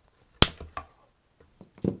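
Floral cutters snipping through a silk flower stem: one sharp click, followed by a few fainter clicks.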